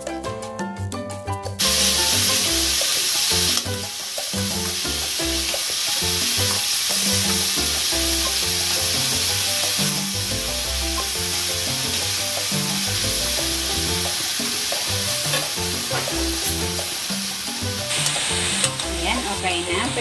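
Marinated chicken pieces sizzling as they pan-fry in hot oil in a metal wok. The sizzle starts abruptly about two seconds in, is loudest for the next couple of seconds, then runs on steadily. A few scrapes and clicks of metal tongs turning the pieces come near the end.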